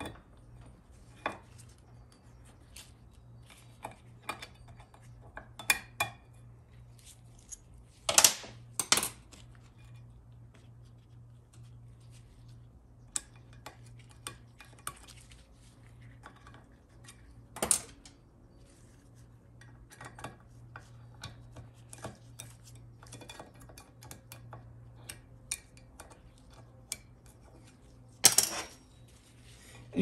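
Small steel valve-train parts and hand tools clicking and clinking against a Ford 4R100 aluminium valve body casting as valves, springs and plugs are pried out and laid down. The clinks come in scattered sharp strikes, loudest about eight seconds in, again around the middle and near the end, over a low steady hum.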